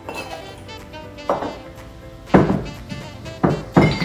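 Bar tools and bottles handled on a wooden bar top: four clinks and knocks with a short ring, the loudest about halfway through, over steady background music.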